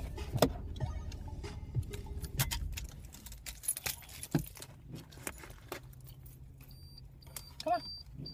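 Car keys jangling and clicking inside a just-parked car, with a low rumble that drops away about three seconds in. Near the end a car's warning chime beeps about twice a second.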